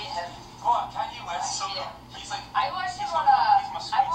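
Indistinct talking voices that sound thin and tinny, with no low end.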